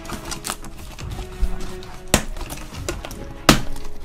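A cardboard shipping box being handled and its flaps pulled open: scraping and rustling cardboard with three sharp knocks, near the start, about halfway and near the end. Background music plays underneath.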